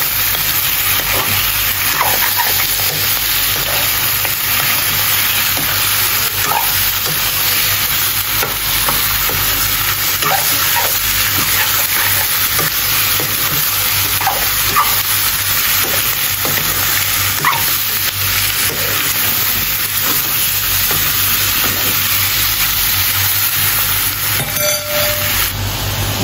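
Mutton pieces and onions frying in oil in a wok, a steady sizzle, stirred now and then with a metal spoon.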